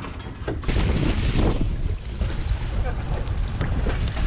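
Wind buffeting the microphone, getting louder about a second in, over water sloshing around a dinghy alongside a boat's hull.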